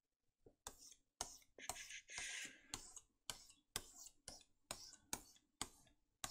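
Faint, sharp clicks about two a second, fairly evenly spaced, with a short scratchy hiss about two seconds in.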